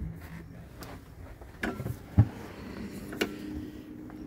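Latches of a Super ATV flip-up UTV windshield being snapped shut by hand: a few short, sharp clicks, the loudest about two seconds in.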